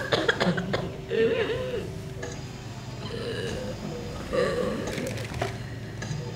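An elderly woman's strained, wavering vocal sounds of effort, three short ones, as she is helped down into a chair. A few knocks come in the first second, like a walking cane and feet on a wooden stage floor.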